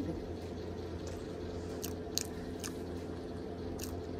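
A person chewing food close to the microphone, with a few short wet mouth clicks in the second half, over a steady low hum.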